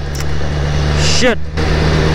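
BMW S1000RR inline-four engine running steadily on the move, with wind rushing over the rider-mounted microphone.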